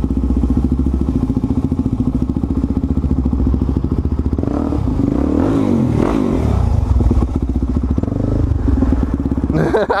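Suzuki DR-Z400SM supermoto's single-cylinder four-stroke engine running at low road speed, with the revs rising and falling about halfway through.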